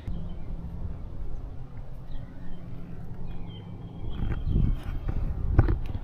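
Outdoor background with a steady low rumble and a few faint high chirps. From about four seconds in come several dull thumps and knocks, the loudest near the end.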